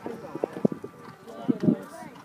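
Horse's hooves thudding on the arena surface as it lands from a jump and canters on: a few dull hoofbeats about half a second in and again near a second and a half.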